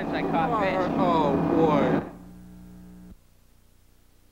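A voice for about the first two seconds, with no words made out, then a steady low hum that cuts off suddenly a little after three seconds in.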